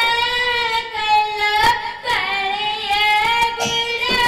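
Odia Pala singing: one high voice holding long, slightly wavering notes, with a short break in the middle and no drum under it.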